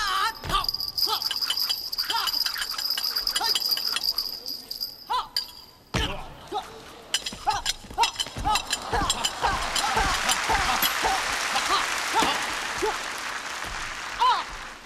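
Martial-arts stage fight: short shouted yells from the performers, with thuds as bodies land and fall on the wooden stage floor, the biggest about six seconds in and several around eight to nine seconds. An audience noise swells from about nine to thirteen seconds.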